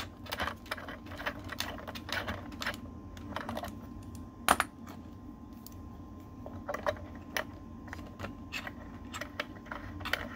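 Irregular small metallic clicks and ticks of threaded coax connectors being unscrewed and handled at an antenna analyzer's port. One louder clack comes about four and a half seconds in.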